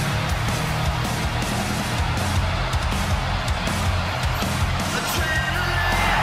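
Rock entrance music with electric guitar, playing steadily.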